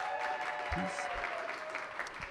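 Audience applauding, with one long held tone drifting slightly lower over the clapping.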